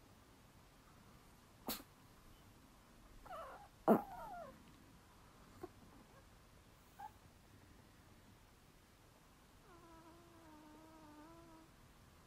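A Chihuahua whining softly: a short falling whine with a click about four seconds in, then a longer, slightly wavering whine near the end, with a few small clicks in between.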